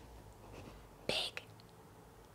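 A woman's quiet, whispered speech: a short letter sound about a second in, then a faint click.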